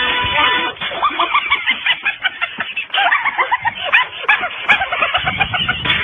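Guitar music cuts off under a second in, followed by many short, overlapping animal calls in a rapid jumble, each rising and falling in pitch.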